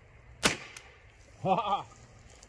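A single shot from a Remington 870 pump shotgun firing a homemade dragon's breath shell packed with steel wool, a sharp report about half a second in. It is a low-pressure homemade load: there is not enough back pressure, though the steel wool does ignite.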